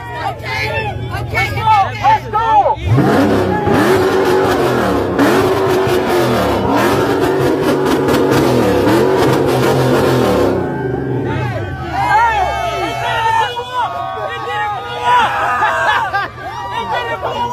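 The Dodge Scat Pack's 6.4-litre HEMI V8 starts just under three seconds in with a rising flare of revs. It then runs loudly for about seven seconds, the revs rising and falling, on plastoline, a fuel made from plastic, in a tank that was otherwise empty.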